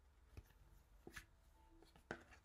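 Near silence, with two faint soft taps about a second apart as tarot cards are handled and laid down.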